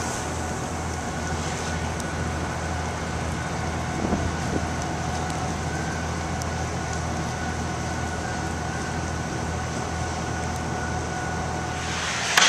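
Harbour passenger ferry's engines running steadily under way: a low, even drone with a faint steady whine above it, over a haze of wind and water noise.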